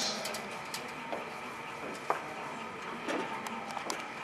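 Room tone of a hall full of waiting spectators: a faint steady background with scattered light clicks and knocks, the sharpest about two seconds in.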